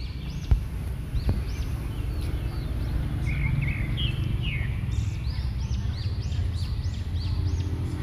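Stone pestle grinding and scraping sambal terasi in a stone cobek mortar, a steady low rasp with two sharp knocks in the first second and a half. Birds chirp repeatedly in the background, most often in the second half.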